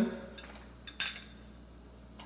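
Two light clinks of kitchenware about a second in, a small tap followed by a sharper one with a short ring.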